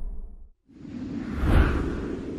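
A whoosh sound effect swells to a peak about one and a half seconds in, then fades, following the dying tail of an earlier whoosh.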